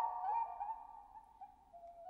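Several flutes holding overlapping high notes with small slides between them, fading away over about a second and a half to a near-hush, before a single new note comes in near the end.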